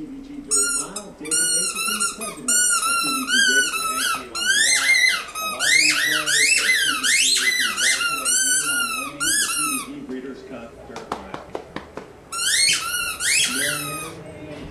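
A puppy chewing a squeaky dog toy, making it squeak over and over in quick runs. Each squeak rises and falls in pitch. The squeaking stops for about two seconds, with a few light clicks, then starts again near the end.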